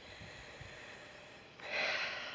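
Faint outdoor quiet, then about a second and a half in a short, loud breath close to the microphone.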